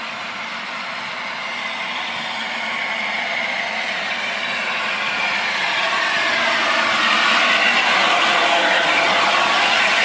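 LNER A4 Pacific steam locomotive 60007 running slowly into a station platform: a steady rushing noise that grows louder over the first seven seconds as the engine draws alongside, then holds.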